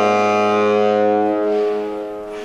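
Tenor saxophone on a Vandoren T35 V5 mouthpiece holding a long low note, rich in overtones, then moving to a higher note about one and a half seconds in that fades away near the end.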